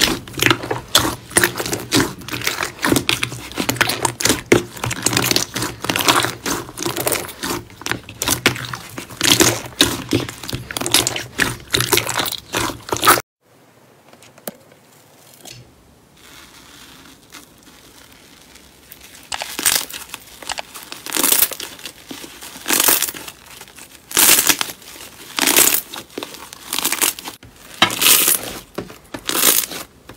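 Hands squeezing and kneading soft slime, with dense squishy, crackling popping sounds. About 13 seconds in it drops to a much quieter stretch. From about 19 seconds, crackly tearing sounds come once or twice a second as fibrous pink slime is pressed and pulled apart.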